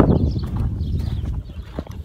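Wind rumbling on a phone microphone, with a few scattered knocks and scuffs from a person walking.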